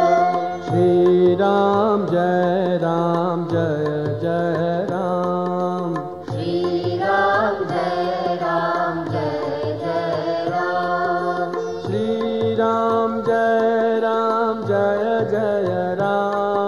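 Hindu devotional bhajan music: a naamaavali chant of Lord Rama's names in a Carnatic-style melody over a steady drone, with a faint high tick about twice a second keeping time.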